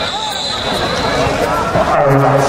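A man's voice over dense crowd noise, with a steady high-pitched tone through the first part.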